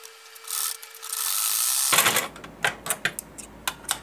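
Usha sewing machine running to sew a short straight seam through fabric, starting about a second in and going for a second or two, followed by a few sharp clicks.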